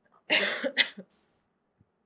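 A woman coughing into her hand: one longer cough and a shorter one right after, about half a second in.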